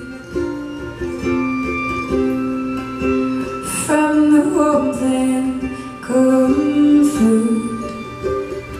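Live acoustic string band playing: ukulele, fiddle, upright bass, mandolin and acoustic guitar, with long held melody notes over plucked chords.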